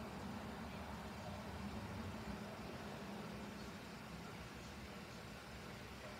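Faint, steady low hum with a light hiss: room tone from a running appliance such as a fan or air conditioner, with no distinct sounds.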